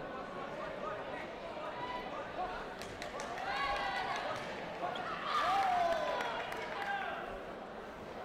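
Indistinct voices of several people talking and calling out in a large, echoing sports hall, loudest a little past the middle. There are a few sharp knocks about three seconds in.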